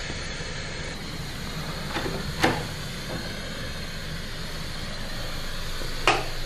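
A steady low rumble with two short knocks a little after two seconds in, the second one louder.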